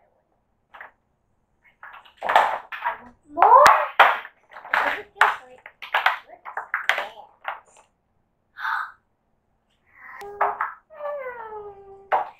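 A young girl's voice in short bursts of talk and exclamation, with drawn-out gliding vocal sounds near the end and one sharp click about four seconds in.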